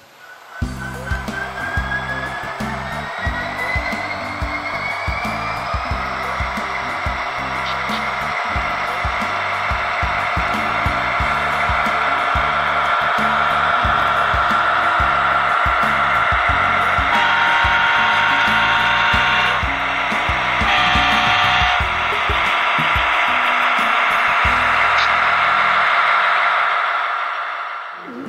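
Diesel locomotive running, a whine rising in pitch over the first few seconds over a steady engine rumble. Past the middle the air horn sounds twice, a long blast and then a shorter one.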